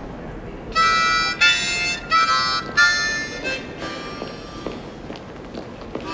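Harmonica music: four loud held chords in quick succession, from about one second in to about three and a half seconds in, then softer playing.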